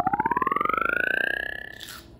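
A rising sound effect: one tone glides steadily upward from low to high while rapid pulses in it speed up, then it cuts off suddenly with a short crunchy burst near the end.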